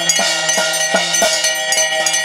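Temple ritual music of ringing metal bells with percussion, struck in a steady rhythm of about three beats a second.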